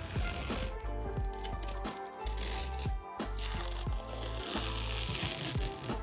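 Masking tape being peeled off the edge of a glass mirror and its painted wooden frame: a crackling, rasping tear in several long pulls with short pauses between. Background music plays throughout.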